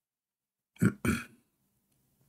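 Someone clearing their throat: two short, loud rasps in quick succession about a second in.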